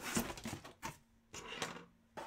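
Cardboard hobby box being opened by hand: a few short scrapes and rustles as the lid is pulled free and lifted.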